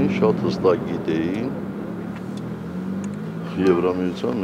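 A man speaking in a short phrase at the start and again near the end, with a pause between in which a steady low hum carries on under the voice.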